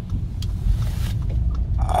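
Steady low rumble of a car's engine and tyres heard inside the cabin while driving, with a small click about half a second in.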